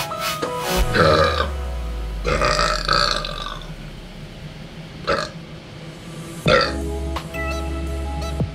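A man burping several times over background electronic music: a burp about a second in, a longer drawn-out one from about two to three and a half seconds, then two short ones later.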